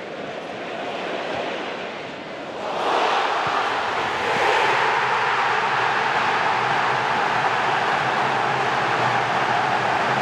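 Football stadium crowd noise that breaks, about three seconds in, into loud, steady cheering: the home fans celebrating a goal.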